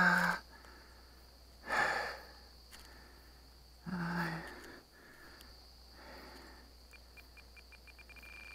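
A man's voice and breath: a held 'uh' trailing off just after the start, a short breathy exhale about two seconds in, and a brief voiced sigh about four seconds in. Faint rapid ticks near the end.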